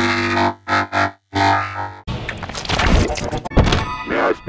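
Heavily effected, distorted edit audio: held, buzzy music tones that drop out briefly about a second in, then from about halfway a dense, choppy jumble of thuds and noisy sound effects.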